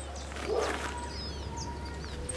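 Small birds chirping faintly over a steady low outdoor background hum.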